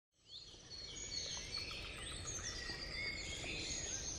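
Several birds singing and chirping in short whistled phrases over a low, steady background rumble, fading in from silence just after the start.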